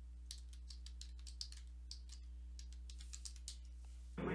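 Faint, irregular clicking of computer keyboard keys being typed on, over a low steady hum.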